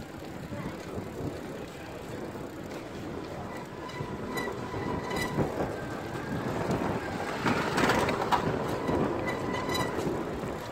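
Outdoor street noise: a steady rumble that swells about eight seconds in, with a faint steady high whine in the middle and again near the end.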